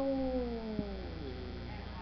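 A person's voice drawing out one word, "I", in a long held tone that slides slowly down in pitch for over a second, over a steady electrical hum.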